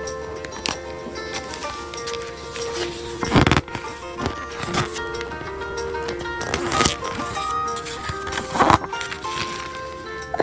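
Background music with long held notes, with three brief rustles of book pages being handled and turned. The loudest rustle comes about three and a half seconds in.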